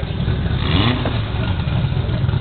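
Drag-race car engines running loudly at the start line, with a short rev that rises and falls about half a second in.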